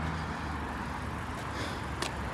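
Road traffic noise with the low, steady hum of a car engine close by.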